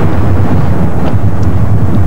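Loud, steady low rumble of wind buffeting the microphone in an open-top Cadillac convertible on the move, mixed with the car's driving noise.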